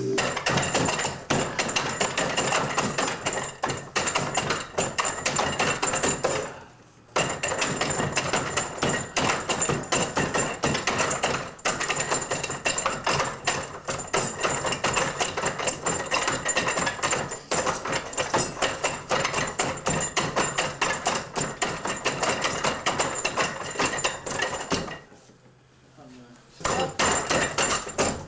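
Fast, continuous wooden knocking and clacking of hands and forearms striking a wooden wing chun dummy's arms and trunk, with a short break about a quarter of the way in.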